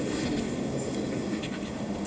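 Pens scratching on paper as a contract is signed close to table microphones, over a steady low murmur of the room.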